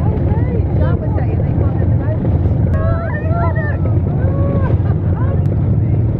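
Motor of a small tour boat running with a steady low rumble, under the overlapping background chatter of passengers.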